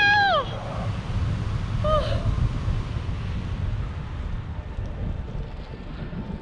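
Wind buffeting the action camera's microphone in paragliding flight, a steady, deep, noisy rumble. A whoop trails off just after the start, and there is a short call about two seconds in.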